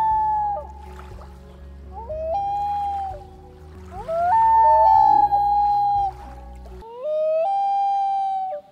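Common loon wail calls: four long, clear notes, each sliding up and stepping to a higher held pitch, with a low steady rumble under most of them.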